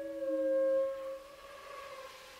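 Chamber ensemble holding long sustained notes: a two-note chord whose lower note stops about a second in, while the upper note sinks slightly in pitch and fades.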